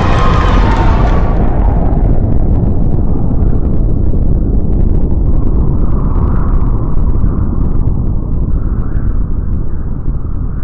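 A loud, deep rolling rumble of a thunder sound effect, with slow swells. The music and crowd noise before it cut off about a second in.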